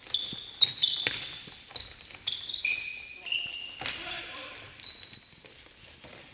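Indoor shoes squeaking on a wooden gym floor in many short, high chirps as futsal players run and turn, with sharp thuds of the ball being kicked or bouncing, the loudest within the first second or so.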